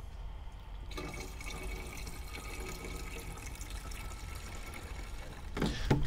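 Engine coolant being poured steadily from a jug into the plastic overflow reservoir, topping up a reservoir that was a little low. The pour starts about a second in and stops shortly before the end.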